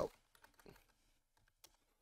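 A few faint, scattered clicks of typing on a computer keyboard.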